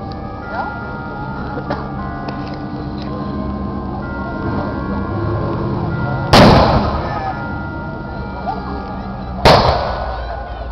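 Two black-powder musket shots about three seconds apart, the first about six seconds in and the second near the end, each a sharp report that echoes briefly.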